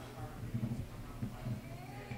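Faint, indistinct human voices with a wavering pitch, no clear words.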